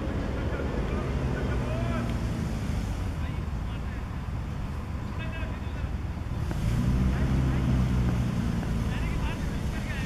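Outdoor background of a steady low rumble with faint, distant voices. The rumble swells louder from about six and a half seconds in and eases off again before the end.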